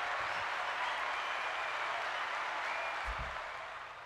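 A crowd applauding, a steady patter that fades slightly near the end, with a soft low thump about three seconds in.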